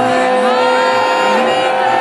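Progressive house music from a DJ set played loud over a PA: sustained synth lead notes with gliding pitch changes over a steady kick drum at about two beats a second.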